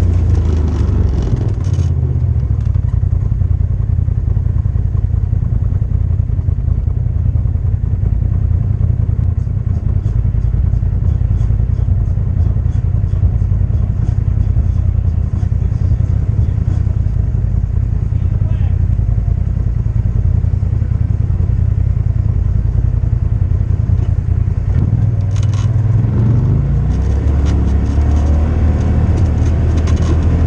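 Off-road vehicle's engine running steadily at low trail speed, with light clatter over the rough ground; about 26 seconds in the engine note rises as it accelerates.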